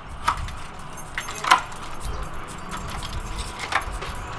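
A bunch of keys jangling and clicking as a key is worked in the lock of a steel door, with a few sharper metallic clicks, the loudest about a second and a half in. A low steady rumble sits underneath.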